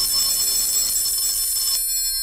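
Telephone bell ringing as a radio-drama sound effect: one long ring that stops near the end.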